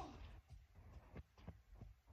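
A football thuds at the very start, then a few faint soft thumps from the ball being played about on a garden lawn, in near silence.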